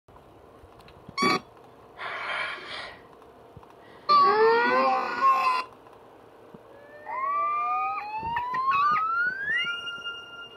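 Sound effects from a children's video playing through computer speakers: a short chirp, a noisy pitched burst, then a loud warbling pitched sound, and near the end a smooth rising whistle-like glide.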